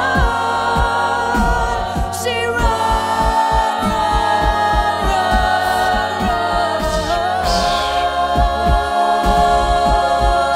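A cappella group singing held chords in harmony behind a soloist, with a beatboxer keeping a steady kick-drum beat underneath.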